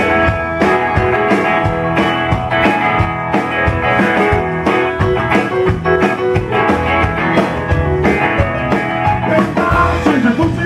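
A rock band playing live, an instrumental passage with electric guitar over a steady beat of drum hits.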